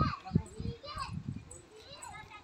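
Children's voices calling and chattering in the background in short, high-pitched bursts.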